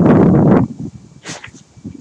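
A loud rush of rustling noise lasting about half a second at the start, then fainter rustles and a brief hiss near the middle.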